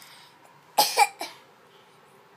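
A young child deliberately gagging and coughing: two harsh bursts close together just under a second in, then a weaker third.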